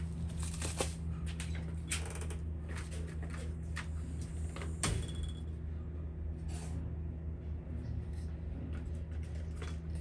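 Scattered light clicks and knocks, with one louder knock about five seconds in, over a steady low hum.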